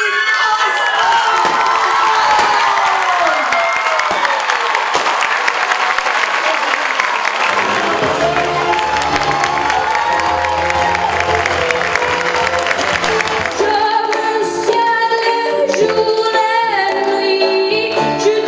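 Audience applauding and cheering, with a few whoops near the start; music comes in under the applause partway through. About fourteen seconds in, the applause gives way to a girl singing solo with band accompaniment.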